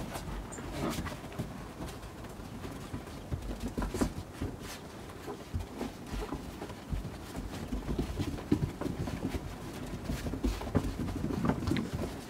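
Puppies play-fighting on snow, making short, irregular scuffles and small puppy noises.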